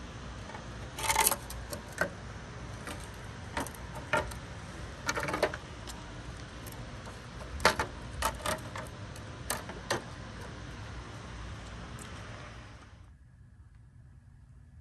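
Chrome-finished plastic trim bezels being handled on wet ground, giving a string of sharp plastic clicks and clatters over a steady background hiss. The hiss cuts off abruptly near the end.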